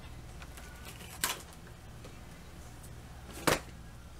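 Pink Barbie cardboard box being handled while a little door is opened: two short, sharp cardboard noises, one about a second in and a louder one near the end.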